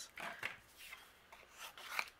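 Cardstock and small die-cut paper pieces sliding and rubbing on a craft mat under the hands, in a few soft strokes with a louder one near the end.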